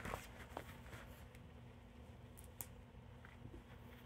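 Near silence in a small room with a faint steady low hum, the soft rustle of a picture-book page being turned at the start, and a few faint clicks.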